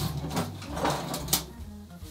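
A few light knocks and clicks of tools being picked up and handled on a workbench, over a low steady hum.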